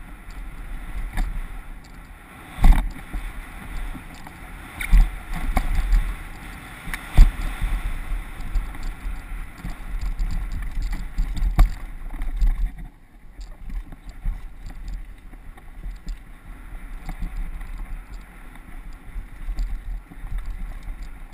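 Downhill mountain bike running fast over a rough dirt trail, heard from a helmet-mounted camera: a continuous rumble of wind on the microphone and tyre and trail noise, broken by several sharp knocks as the bike hits bumps.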